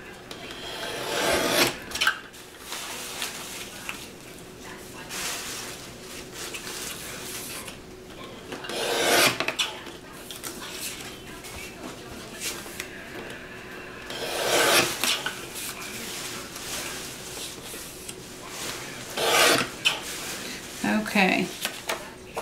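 A paper trimmer's blade drawn along its track, slicing strips off a sheet of white paper: four loud scraping cuts of about a second each, spaced several seconds apart, with lighter rubbing of paper and hands on the trimmer between them.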